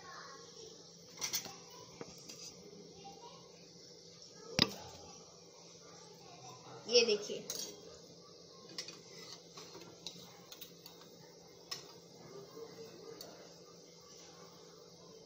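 A long metal slotted spoon knocking and scraping against a steel kadai while gulab jamun are turned and lifted out of frying oil: a handful of sharp metallic clinks at irregular intervals, the loudest a little before the halfway point and one just past it, over a faint steady hiss.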